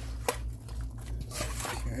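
Metal utensil clinking and scraping against a stainless steel mixing bowl while tossing wet sliced vegetables in vinaigrette, with a sharp clink about a quarter second in and a wet rustle of the vegetables past the middle.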